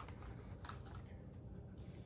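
Faint, scattered light clicks and taps of a small red ornament box being handled, a few separate ticks with a cluster near the end.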